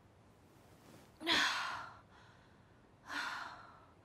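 A young woman's voice sighing twice, breathy exhalations about a second in and again about three seconds in, the first the louder.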